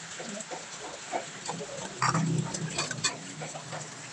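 A metal ladle stirring a simmering pot of chicken stew, clicking and scraping against the steel pot over a steady bubbling hiss. A short, louder low sound comes about halfway through.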